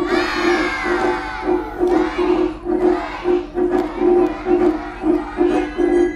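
A group of children shouting together, loudest in the first second and a half, with more scattered shouts after. Underneath runs festival dance music with a steady pulsing beat about twice a second.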